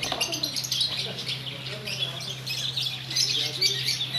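Birds chirping repeatedly, with faint voices in the background and a low steady hum.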